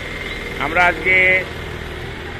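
A vehicle engine idling with a steady low hum, under a man's voice speaking briefly in the middle.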